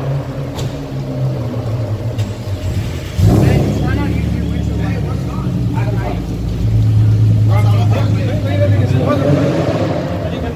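Car engine idling with a steady low hum; about three seconds in a louder engine rumble joins and stays, with background voices over it.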